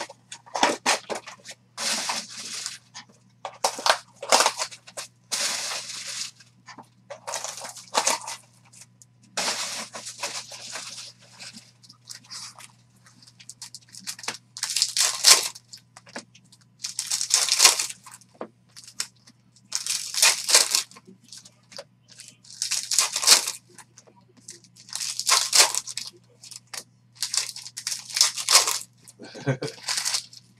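Foil card packs being torn open and crinkled by hand, one after another, in short rustling bursts every two to three seconds, over a steady low hum.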